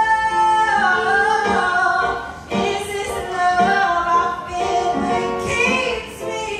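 A woman singing a soul/R&B song live, with keyboard accompaniment. She holds a long note at the start, then sings on through bending, melismatic phrases.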